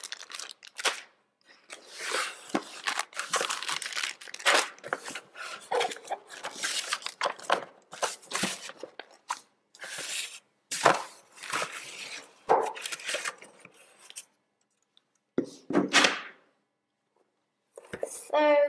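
Clear plastic bags of loom rubber bands crinkling and rustling in the hands as they are taken out of a cardboard box and set down, with a few soft knocks from the box and packaging. The crinkling comes in irregular bursts and stops briefly twice near the end.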